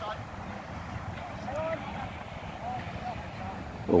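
Wind rumbling on the microphone, with faint shouts from players across the field about a second and a half in and again near three seconds.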